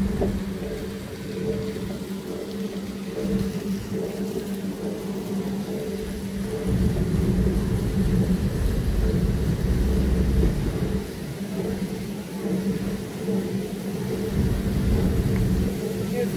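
An amusement-ride car running along its elevated track, giving a steady low rumble with a steady hum above it, a little louder about halfway through.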